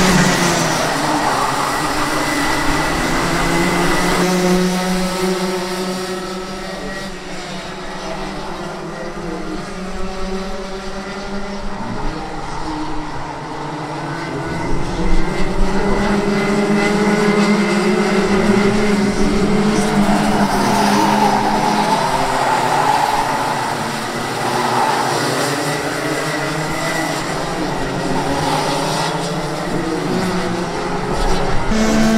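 Rotax Junior Max racing karts' 125 cc two-stroke single-cylinder engines running hard as a pack, pitch rising and falling as the karts accelerate and lift through the corners.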